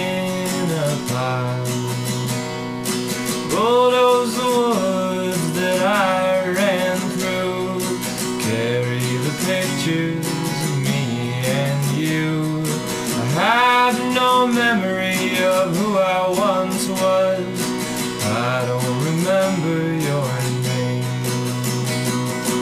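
Acoustic guitar with a capo strummed in a steady folk rhythm, with a man singing over it.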